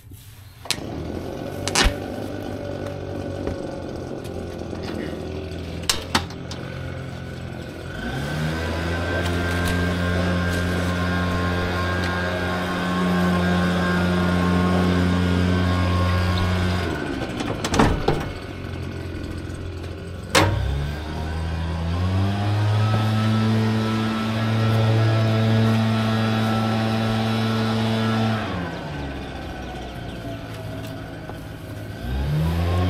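An engine revs up and holds a steady speed for about nine seconds, then winds down, twice. Between the runs come sharp knocks of the plastic can and debris against the truck bed.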